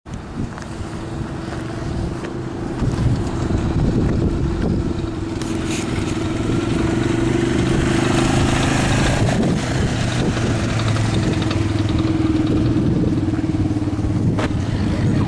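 A small motor vehicle's engine running at a steady, even speed, with a hiss of tyres or wind swelling and fading about halfway through.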